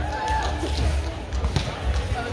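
A volleyball struck once with a sharp smack about one and a half seconds in, heard over the chatter of voices and a steady low hum in a large hall.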